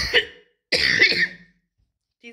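A woman coughing twice, two short harsh bursts under a second apart.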